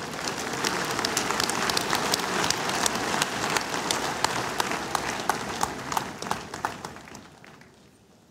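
A large congregation applauding: a dense patter of many hands clapping that swells in the first second and dies away over the last two seconds.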